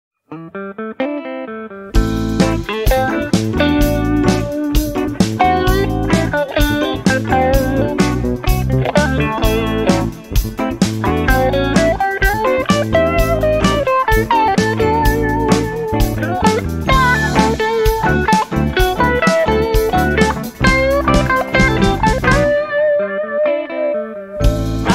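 Instrumental intro of a blues-rock song led by guitar. A few sparse notes open it, the full band comes in loud about two seconds in, and it drops back to a thinner passage near the end.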